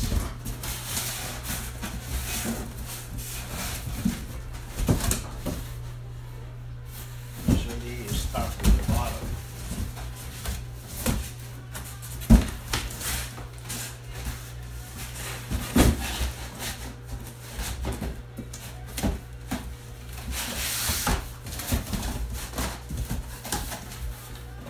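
Large cardboard box being handled and folded into shape: irregular knocks, flaps bending and cardboard rubbing, with a few louder thumps, over a steady low hum.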